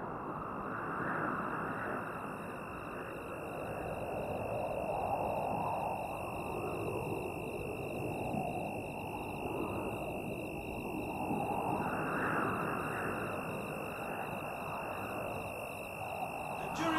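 Ambient background soundtrack: a steady, rushing drone that slowly swells and fades every few seconds, with a thin, steady high tone held above it.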